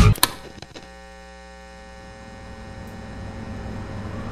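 Music cuts off sharply with a click just after the start, leaving a steady electrical mains hum, a buzz with many overtones, that grows slowly louder.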